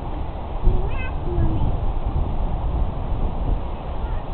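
Faint, distant voices over a steady low rumble of noise on the microphone, with a brief high-pitched call about a second in.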